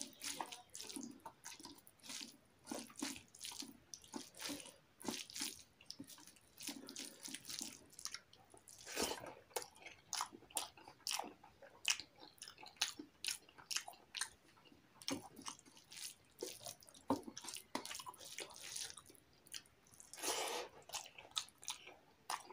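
Close-up wet eating sounds: rice mixed with curry gravy by hand and chewed, an irregular run of quick smacks and clicks, several a second.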